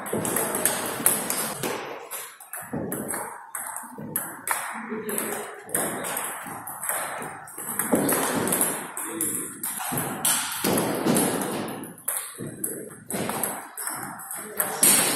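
Table tennis ball clicking back and forth between rubber paddles and the table in repeated rallies, each hit a short sharp tick, echoing in a large sports hall.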